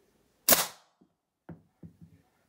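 A slingshot with 0.66 GZK flat bands firing an 8.4 mm lead ball at a hanging drink can: one sharp crack about half a second in, with a short tail. Three much fainter knocks follow over the next second and a half.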